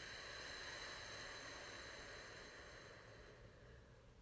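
A long, slow exhale through parted lips: a faint, breathy hiss that fades away near the end.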